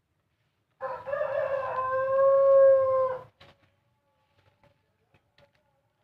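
A rooster crowing once, about a second in: a single call of about two and a half seconds that starts rough and ends in a long held note, which cuts off sharply. Afterwards come a click and a few faint taps and scrapes of potting soil being scooped.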